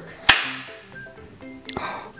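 A single sharp crack from a prop pistol being fired, about a third of a second in, ringing off briefly.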